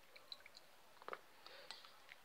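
Faint wet squelches and small drips as a hand squeezes boiled, soaked banana peels, lemon and cabbage leaves in a pot of liquid, a few soft ticks with the clearest about a second in.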